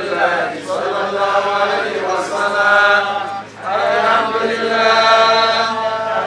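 A man's voice chanting an Islamic prayer in long, melodic held notes through a microphone, with a brief breath pause about three and a half seconds in.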